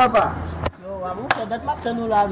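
Men's voices talking, broken by two sharp snaps about half a second apart near the middle.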